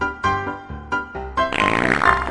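Bouncy keyboard music plays, then about one and a half seconds in a loud comic fart sound effect starts and runs on over the music.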